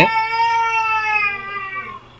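One long, high, meow-like cry, held steady for about two seconds with its pitch sinking slightly, then cutting off suddenly near the end.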